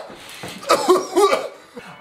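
A man coughing, a few coughs in quick succession about a second in.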